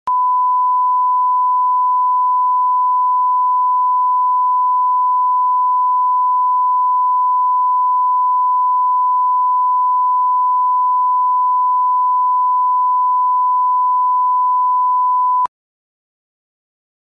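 Steady 1 kHz reference tone played with SMPTE colour bars, the audio line-up signal at the head of a videotape, holding one unchanging pitch and cutting off suddenly near the end.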